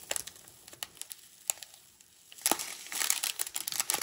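Small clear plastic bags of resin diamond-painting drills crinkling as they are handled, in scattered crackles. It is sparse and quiet through the middle and busier again from about two and a half seconds in.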